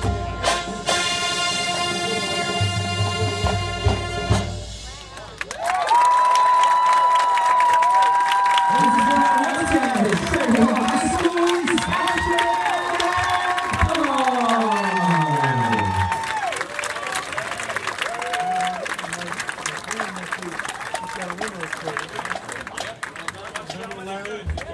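Marching band of brass and drums holding a loud final chord, which cuts off about four and a half seconds in. A crowd then cheers and applauds, with loud whoops and shouts, several gliding down in pitch, settling into steadier applause near the end.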